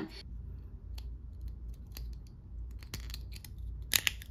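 Small plastic parts of a sound pin's battery module being handled and pressed back into their casing: faint scratches and light ticks, with a sharper click just before the end.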